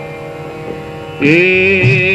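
Tanpura drone sounding on its own, then a male Hindustani classical vocalist comes in a little past halfway with a long held note that wavers slightly in pitch.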